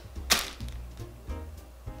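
A single quick swish about a third of a second in, then faint background music.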